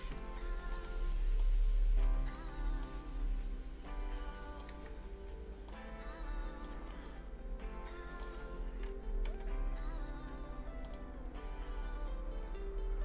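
Background music with sustained chords changing about every two seconds, over a steady low hum.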